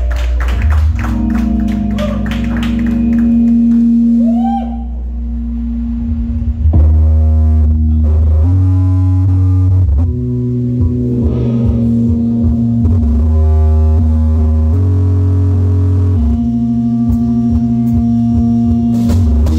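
Live rock band playing loud: electric guitar with sliding, wavering notes over long held bass notes, with drum hits coming in about six and a half seconds in.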